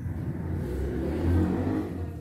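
A motor vehicle's engine rising to its loudest a little past halfway, then fading near the end, as it passes by.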